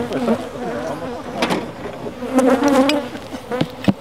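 Agitated honey bees from a cranky hive buzzing close around the microphone, several wing-beat tones wavering up and down in pitch as they fly past; a sharp tap comes near the end.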